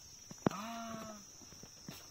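A sharp knock about half a second in, then a person's short wordless vocal sound held on one pitch for under a second.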